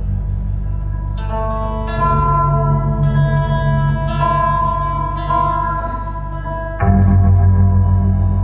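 Live instrumental music: single notes plucked on a zither-type table string instrument ring out over a sustained low drone. The drone changes pitch about two seconds in and jumps louder again near the end.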